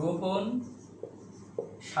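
A marker writing on a whiteboard, with faint rubbing strokes and a couple of small taps in a pause between bits of a man's speech. The speech is the loudest sound.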